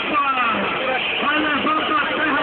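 Motorcycle engines revving, their pitch rising and falling in short blips, over the talk of a crowd.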